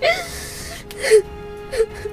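A young woman sobbing: a sharp gasping breath at the start, then two short high whimpering cries, about a second in and near the end, over soft music with a steady held note.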